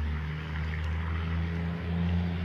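A fairly loud, steady low engine drone holding a constant pitch, from a motor running somewhere outdoors.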